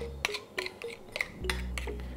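A metal spoon stirring an olive-oil marinade and clinking against a ceramic bowl a few times, over light background music.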